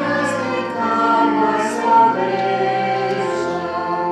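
Choir singing a slow hymn in long held chords.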